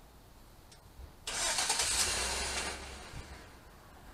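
A vehicle engine starting: a sudden loud surge about a second in that holds for about a second and a half, then fades.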